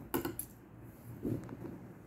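Tailor's scissors cutting stretch-lace fabric: a few sharp clicks and snips of the blades near the start, and another about a second and a half in.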